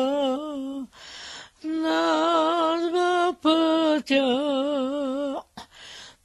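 An elderly woman singing a Bulgarian harvest song unaccompanied, in long drawn-out notes with a wavering, ornamented pitch. She breaks for a breath about a second in and again near the end.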